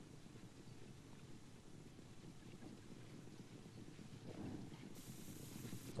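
Faint, low, steady rumbling background noise with no distinct single source.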